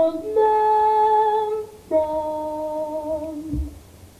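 Female jazz vocalist singing two long held notes, the first bending up slightly as it begins, the second held level. A brief low thump near the end.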